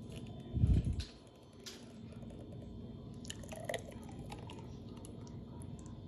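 A blender jar and a glass being handled on a kitchen counter: a dull thump about half a second in, then scattered light clicks and taps as the jar of thick smoothie is tipped to pour.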